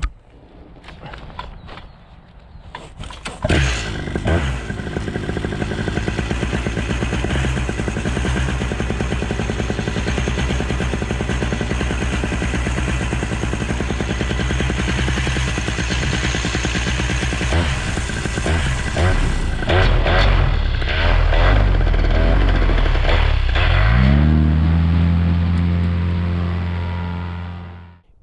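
Paramotor engine and propeller. After a few clicks the engine starts about three seconds in and runs steadily at low throttle. Near the end it revs up, rising in pitch to a loud steady full-power note that cuts off suddenly.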